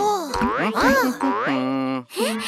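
Cartoon sound effect: springy, boing-like pitch glides that swoop up and down several times, then settle into a steady held tone near the end.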